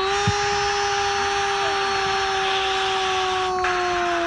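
A male football commentator's drawn-out shout on one held note, sagging slightly in pitch, over a steady hiss: a long goal call.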